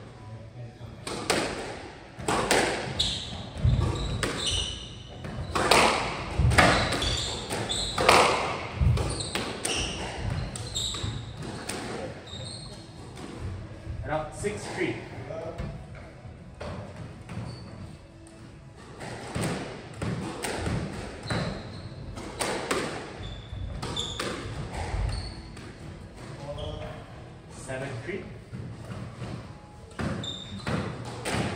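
Squash rally: a rubber squash ball is struck by rackets and hits the walls and wooden floor as a series of sharp knocks, with short high squeaks of court shoes between them.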